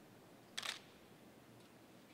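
A single camera shutter click, short and sharp, about half a second in, over faint room tone.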